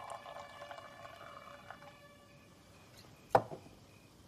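Champagne being poured into a glass, the pour trailing off about two seconds in. A single sharp click comes a little past three seconds, the loudest sound.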